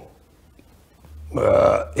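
A pause, then a man's short drawn-out hesitation sound, "uh", about a second and a half in.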